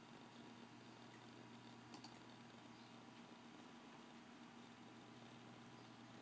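Near silence: faint steady room hum, with one faint click about two seconds in.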